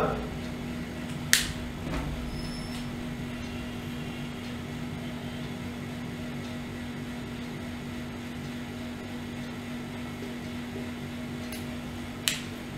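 Steady low machine hum at one even pitch, with a single sharp click just over a second in.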